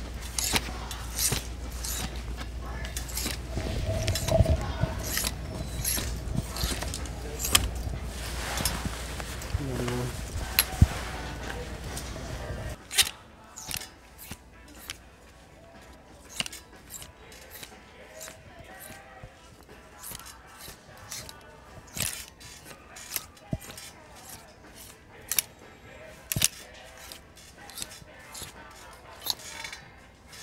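Plastic clothes hangers clicking and scraping along a metal clothing rail as garments are pushed aside one after another, in quick irregular clicks. A humming store background drops away about a third of the way in.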